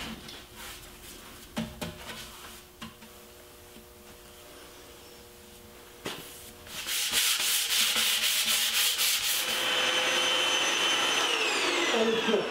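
Faint strokes of a paintbrush laying primer on a wooden drawer front. About six seconds in, a small handheld vacuum starts with a click and runs loudly as its nozzle is worked over the surface. Its whine falls away near the end.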